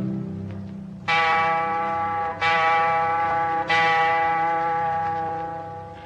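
Clock striking three times, a little over a second apart. Each stroke is a bell-like chime that rings on and fades slowly.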